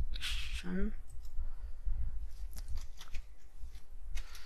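A few sharp computer keyboard and mouse clicks, bunched around two and a half to three seconds in, over a steady low hum. A short breath and a brief voiced 'mm' come in the first second.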